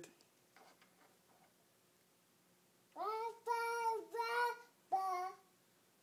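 Toddler singing about four drawn-out, steady-pitched notes without clear words, starting about halfway through after a near-silent pause.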